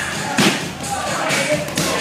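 Strikes landing on Thai pads: one loud smack about half a second in and two lighter hits near the end, with music and voices in the background.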